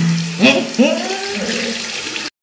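A woman's voice in drawn-out excited cries that slide up and down in pitch, over a steady background hiss.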